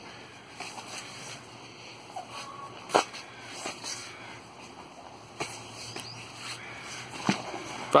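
Padded practice spears knocking together in sparring: a handful of short, sharp clacks spread out, the loudest about three seconds in.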